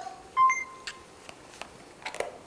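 A short electronic beep about half a second in, a clear single tone that holds for about half a second, followed by a few faint clicks.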